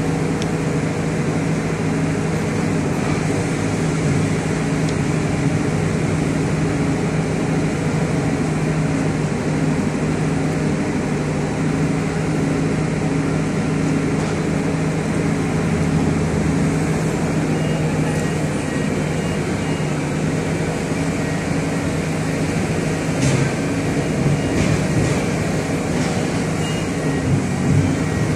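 A large engine running steadily at constant speed, with a few faint clicks after the middle.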